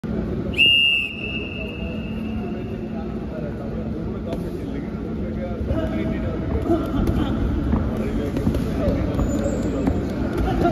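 A whistle blows about half a second in, a high piercing tone that is loudest at the start and fades out over about two seconds. Then come the thuds of gloved punches and the scuffing of feet on the ring canvas, with voices in the hall.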